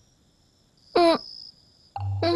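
A woman's short single-syllable vocal sound, rising sharply in pitch, about a second in, like a wordless 'hm?'. Near silence otherwise.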